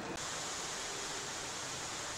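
A steady, even hiss of background noise, which changes abruptly a moment in and then holds steady.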